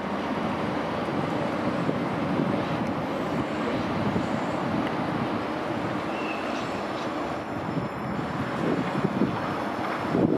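CP Série 2400 electric multiple unit approaching slowly over the rails and points, a steady rumble of running gear with some wind on the microphone.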